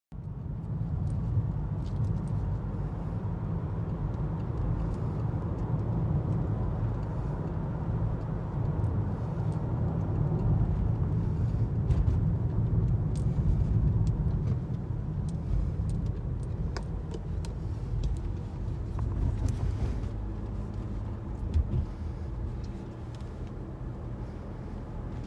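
Car interior road noise while driving: a steady low rumble of tyres and engine heard from inside the cabin, with a few faint clicks and rattles.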